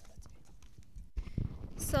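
Microphone handling noise: a run of quick clicks and knocks, then heavier low thuds about a second in, as a live microphone is moved about. A woman starts speaking near the end.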